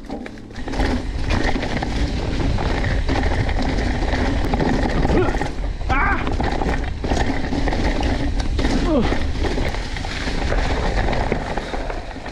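Mountain bike rolling downhill on a leaf-covered dirt trail: a steady rumble and rattle of tyres and bike over leaves and roots, starting about a second in. A few short voice sounds from the rider break in.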